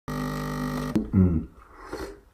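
Espresso machine pump humming steadily as coffee pours into a cup, cutting off suddenly just before a second in. A short, louder low vocal sound from a man follows, then quiet.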